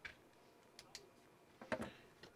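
Mostly quiet, with a few faint, sharp clicks about a second in and a short, soft sound near the end.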